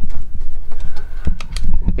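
Several short clicks and knocks as a plastic-and-metal AirPort Extreme card is worked into its slot on the Power Mac G5 logic board, over a low handling rumble.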